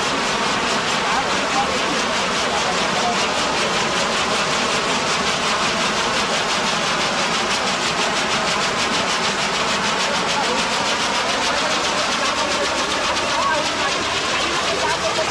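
Bana fireworks burning: a loud, steady hissing rush of sparks with fine, rapid crackling, with crowd voices under it.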